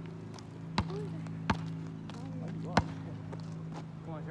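Basketball being bounced and handled: three sharp thumps at uneven intervals, over a steady low hum.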